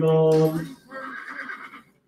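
Horse whinnying in the sale ring, a high, wavering call about a second in, just after the auctioneer's chant trails off.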